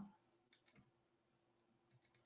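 Near silence, with a few faint computer mouse clicks.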